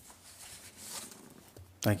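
A quiet lull of room noise with a faint rustle, then a man says "Thank you" near the end.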